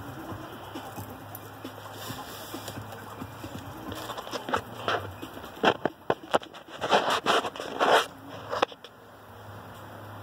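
Handling noise from statue pieces being fitted together by hand: a run of sharp taps, knocks and rustles in the second half, over a low steady background hum.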